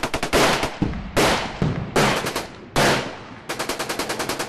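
Gunfire sound effect: a quick burst of rapid automatic fire, then four single louder shots about 0.8 s apart, each with a ringing tail, then another rapid burst of about ten shots a second near the end.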